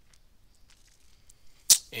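Near silence with a few faint ticks, then a single sharp, loud click near the end, just before a man starts speaking.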